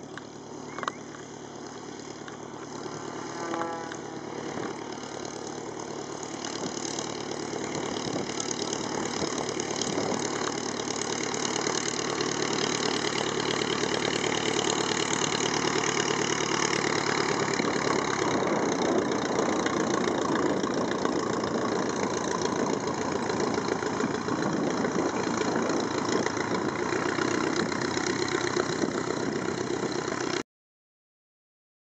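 A Tiger Moth biplane's four-cylinder Gipsy Major piston engine and propeller running steadily as the aircraft taxis on grass. The engine grows louder over the first dozen seconds and then holds at a steady level.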